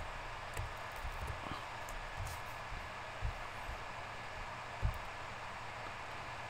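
Steady hiss and low hum of room tone, with a few soft, brief low thumps scattered through it, the loudest about a second before the end.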